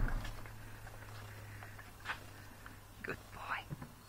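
A horse breathing and sniffing close by, with short breathy puffs, and a few soft clicks and knocks.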